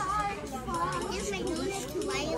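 Young children's voices talking and chattering.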